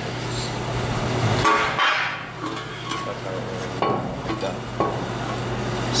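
A loose steel bracket handled against a steel trailer frame: scraping, with a few metal clinks and knocks. A steady low hum stops about one and a half seconds in.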